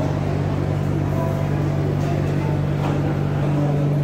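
Steady low hum throughout, with faint, indistinct chatter from people in a large indoor hall.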